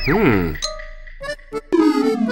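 Cartoon soundtrack: a voice-like sound sliding down in pitch at the start, a short lull, then another falling voice-like sound near the end, over light music.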